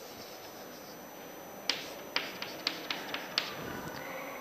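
Chalk tapping against a blackboard while short strokes are drawn: a quick, uneven run of about eight sharp clicks beginning about halfway through.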